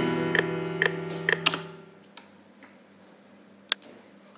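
FL Keys piano chords from the FL Studio playlist, with a sharp tick on each beat at about two a second. Playback stops about a second and a half in and the chord dies away. A single click comes near the end.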